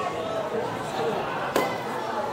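A single sharp click about one and a half seconds in, over background voices.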